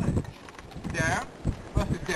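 A beagle and a pit bull play-wrestling: scuffling and thumps, with two short high-pitched yips about a second apart, heard on a low-quality old recording.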